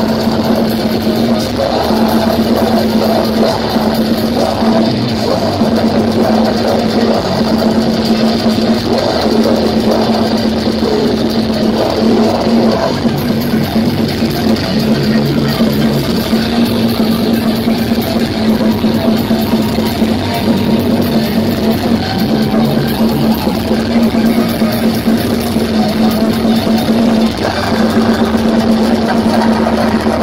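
Live death metal band playing at full volume: distorted electric guitars over a drum kit in a dense, unbroken wall of sound, with a low guitar note held steadily underneath.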